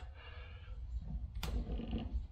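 Faint handling of the waterfall faucet's cartridge stem and body by hand, with low rumbling and one sharp click about one and a half seconds in.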